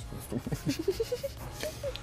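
Wordless voice sounds with mouth noises as people bite into khinkali dumplings: a quick run of short sounds rising in pitch in the first second, then a few scattered ones.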